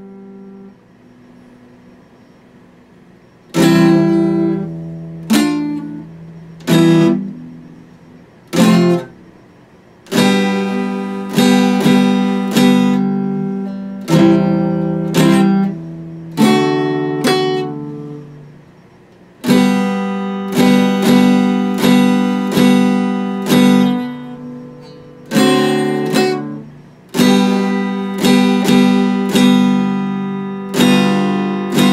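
Acoustic guitar strummed with a pick, each chord ringing and dying away. After a pause of a few seconds near the start come single strummed chords, then steadier strumming.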